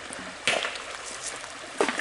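Shallow creek running over a rocky bed, a steady rush of water, with one sharp knock about half a second in.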